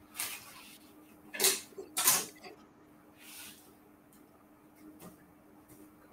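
A few brief rustling, scraping handling sounds from hands pressing strips of cookie dough together on a paper-covered mat, the loudest two about a second and a half and two seconds in, over a faint steady hum.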